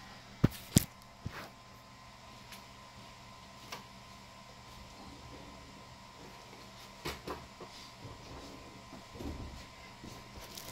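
Handling noise from a phone being set down on a plastic-wrapped surface: a few sharp knocks in the first second and a half. Then faint room tone with a thin steady hum, and a couple more clicks and a soft rustle near the end.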